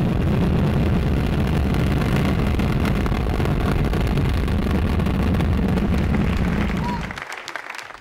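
Ariane 5 rocket lifting off: the steady, heavy roar of its engines and solid boosters, fading out about seven seconds in.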